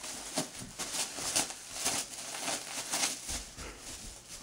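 Wrapping paper crinkling and tearing in irregular short bursts as a bearded collie rips open a wrapped present with his mouth.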